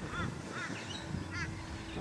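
A bird calling twice in the distance, two short rising-and-falling calls about a second apart, over a faint steady hum.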